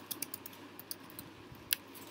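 Typing on a computer keyboard: an irregular run of about ten keystrokes, with one louder key press near the end.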